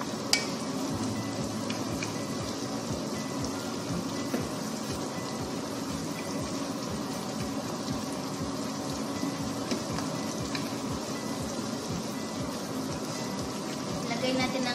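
Sliced onions, garlic and ginger sizzling steadily in butter in a nonstick frying pan as they are stirred with a wooden spatula. A few sharp knocks of the spatula on the pan cut through, the loudest just after the start.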